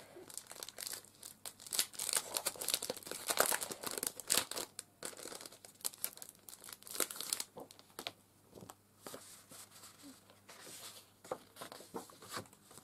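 Clear plastic cellophane packaging crinkling and crackling as a pack of scrapbook papers is handled and slid out of it, with some paper rustling. The crinkling is busiest over the first seven seconds or so, then turns sparser.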